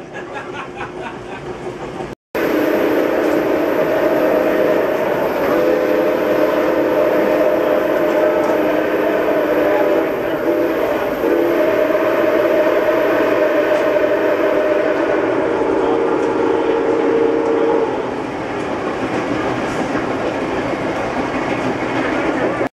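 Milwaukee Road 261's steam whistle blowing a long, steady chord of several tones, from about two seconds in until near the end, with a few brief wavers. The rolling clatter of the moving train runs underneath.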